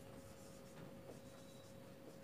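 Marker pen writing on a whiteboard, faint, with a few light strokes over a low steady hum.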